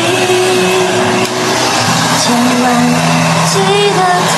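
Hand-held hair dryer blowing steadily, with music and held sung notes over it.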